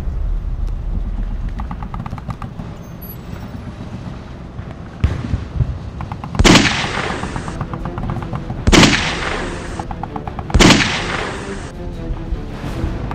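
Three rifle shots about two seconds apart in the second half, each sharp and loud with a long echoing tail, over background music.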